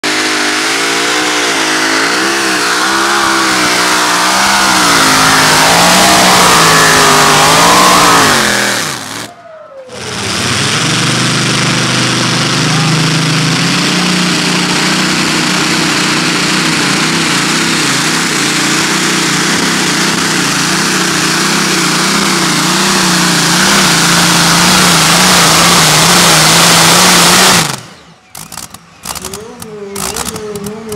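Supercharged engines of custom pulling tractors running flat out under load, the engine note wavering up and down as they pull. The sound drops away briefly about nine seconds in, then a second engine runs steadily until it cuts off suddenly near the end.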